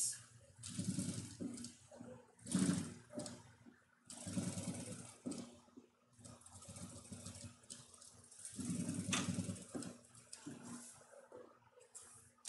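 Electric lockstitch sewing machine stitching in several short bursts, stopping and starting as a seam is sewn along the edge of a quilted pencil case beside its zipper.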